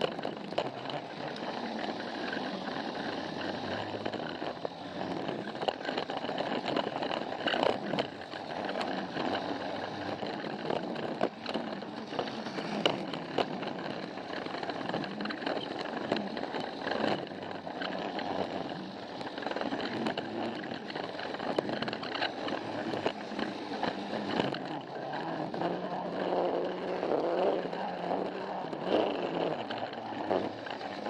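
Battery-powered Plarail toy train (Thomas the Tank Engine) running on plastic track: a steady whirring from its motor and gears, with frequent clicks as the wheels cross the track joints.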